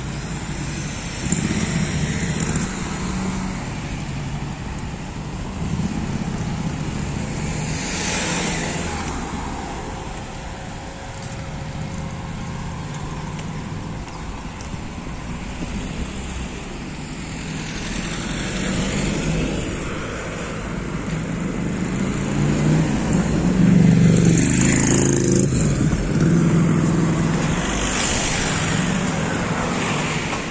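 Road traffic: cars driving past one after another over a steady low rumble, each pass swelling and fading, the loudest a little past the middle.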